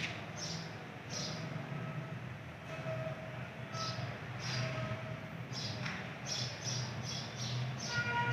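A steady low hum with short, high chirps of small birds scattered through it, coming more often near the end.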